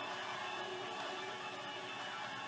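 Video-game car engine and road noise from a TV's speakers as a car is driven in the game: a steady, even hum.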